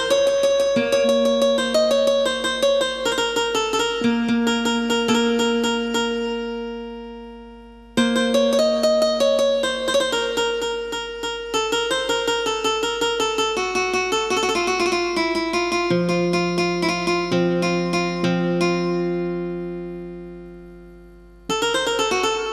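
Yamaha Tyros 4 arranger keyboard playing an instrumental intro in a plucked, guitar-like voice: quick runs of notes over held bass notes. The phrases die away about seven seconds in and again near the end, each time starting again.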